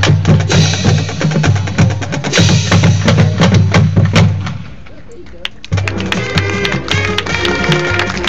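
Marching band and front ensemble playing: loud brass over rapid percussion hits, dropping away to a quieter moment about five seconds in, then held brass chords over steady drum strokes coming back in just before six seconds.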